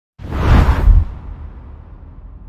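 Intro logo sound effect: a deep whoosh that swells up quickly, peaks within the first second, then fades into a long, low rumbling tail.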